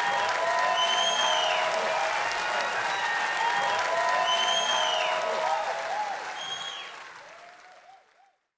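Concert audience applauding and cheering after the song's final chord, with shouts and whistles over the clapping. The applause fades out near the end.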